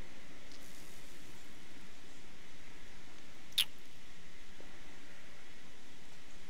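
Steady hiss of room tone, broken once by a short, sharp click about three and a half seconds in.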